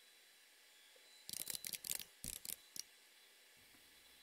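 Computer keyboard typing: a quick run of separate key clicks lasting about a second and a half, starting just over a second in after near silence.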